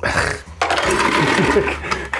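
Ice cubes rattling as a scoop digs into an ice bucket.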